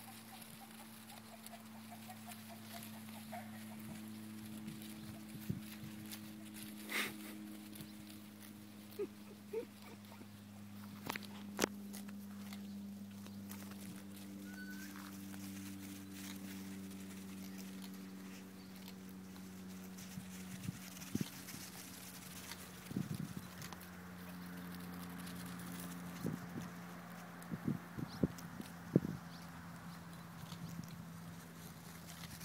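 Small hooves of young goats pattering and knocking on sandy dirt as they run about, in scattered strikes that come more often in the last third. A steady low hum runs underneath.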